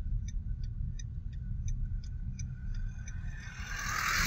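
Car driving slowly, heard from inside the cabin: a steady low rumble from the engine and road. Faint, quick ticks come about three times a second, and a rushing hiss swells near the end.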